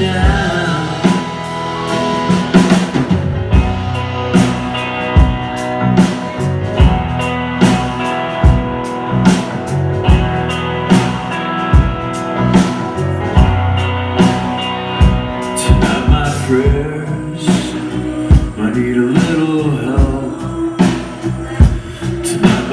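Live rock band playing an instrumental break: a steady drum-kit beat under electric guitar, bass guitar and keyboards.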